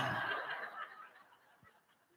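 Faint laughter trailing off within about a second, then near silence.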